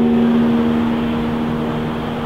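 The last acoustic guitar chord ringing out, one low note holding longest and fading away about one and a half seconds in. Under it is a steady rushing background noise of the open air.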